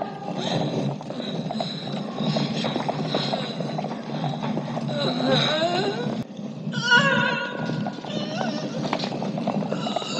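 Horses' hooves clopping on a stone floor and horses whinnying as a mounted troop rides out, with men's voices in the mix.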